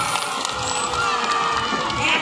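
Crowd noise from an audience: many overlapping voices at once, with no single voice standing out.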